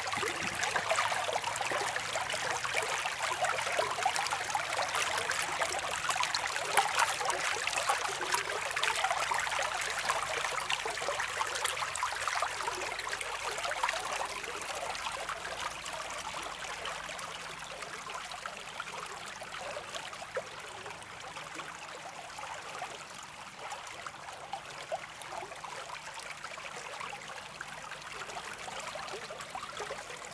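Water of a small stream running over rocks, a steady rushing that grows gradually quieter after the middle.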